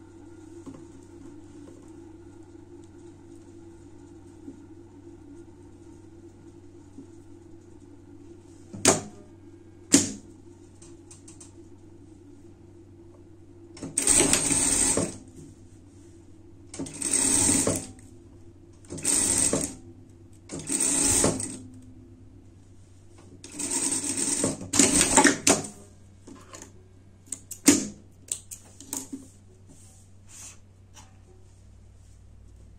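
An industrial sewing machine stitches in short runs of about a second each, about six of them in the second half, while elastic is sewn along the sides. A steady low hum runs underneath, with two sharp clicks before the stitching starts and a few light clicks after it.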